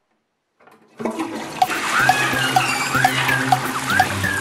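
A toilet flushing, the rush of water starting suddenly about a second in, with music that has a steady beat and bass playing over it.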